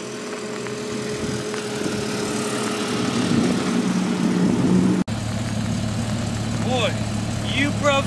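A car engine running, growing louder over the first few seconds as the car pulls up. After a sudden cut about five seconds in, it idles steadily.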